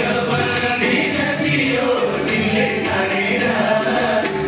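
A man singing a Nepali folk song into a microphone over loud, steady amplified backing music.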